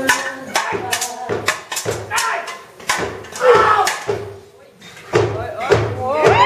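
Swords and a round steel shield clashing in a staged sword fight: a quick run of sharp strikes, with a lull about two-thirds of the way through before a few more blows.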